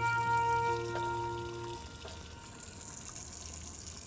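Water running from a tap into a sink, a steady hiss, under held background-music notes that fade out about two seconds in.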